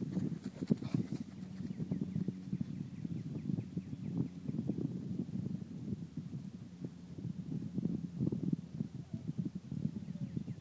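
Footsteps on dry grass close to the microphone: a continuous run of low, muffled thuds and rustling.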